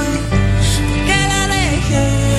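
Live pop ballad: a woman sings into a handheld microphone over band accompaniment with steady bass notes. Her sung line falls in pitch about halfway through.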